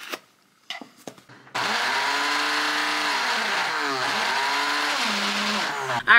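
Countertop blender motor running as it blends a smoothie, starting about one and a half seconds in after a few light clicks. Its pitch dips and recovers several times as the blades catch the contents, and the sound stops abruptly near the end.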